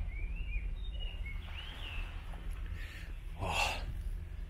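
Birds singing short chirping phrases in the first half over a steady low rumble, then a short breathy burst near the end.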